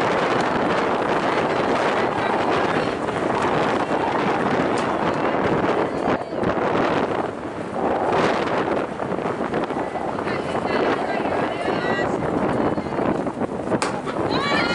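Wind buffeting the microphone over indistinct chatter of players and spectators. Just before the end, a single sharp crack of a softball bat hitting the ball.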